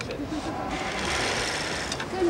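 A steady mechanical whirring from a film camera set running, starting a little under a second in.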